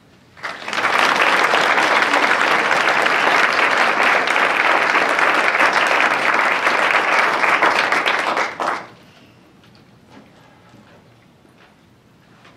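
Audience applauding, starting about half a second in and stopping fairly abruptly about three seconds before the end.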